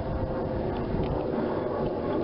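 Steady wind noise buffeting the microphone aboard a small sailboat under sail, with the wash of the water around the boat.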